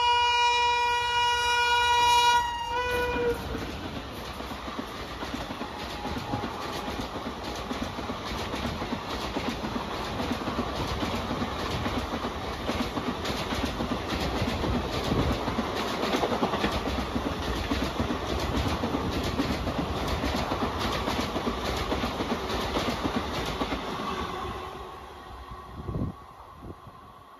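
An electric locomotive's horn sounds one long, loud blast that cuts off about two and a half seconds in. Then a passenger train passes at speed: a steady rush of coaches with rapid clicking of wheels over rail joints, fading near the end.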